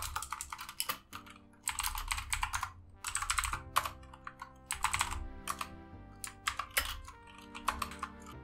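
Computer keyboard typing in several quick bursts of keystrokes with short pauses between them, over soft background music with held notes.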